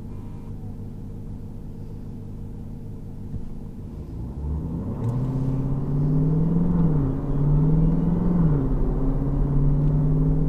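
Jeep Grand Cherokee Trackhawk's supercharged V8 heard from inside the cabin, idling, then revving up about four seconds in and running hard under load, its pitch dipping and recovering twice.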